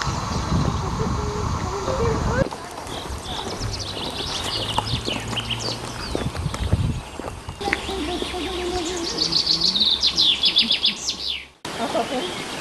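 Songbirds singing: short, high chirping phrases, then a fast run of repeated high notes near the end. A low rumbling noise with faint voices fills the first couple of seconds, and the sound changes abruptly twice.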